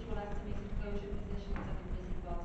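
A person speaking, with a steady low rumble underneath.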